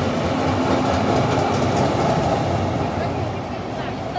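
A Zurich city tram passing close by, its running noise swelling and then easing off as it goes past, with light clicking from the wheels on the rails midway.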